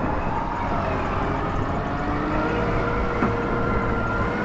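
Tractor diesel engines working hard under load as one tractor tows another, stuck with a loaded muck spreader, out of a waterlogged field on a rope. A steady engine rumble with whining tones that drift slowly up and down in pitch.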